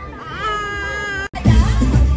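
A young child's drawn-out cry, rising and then held, breaks off abruptly about a second in. Loud dance music with a heavy bass beat follows.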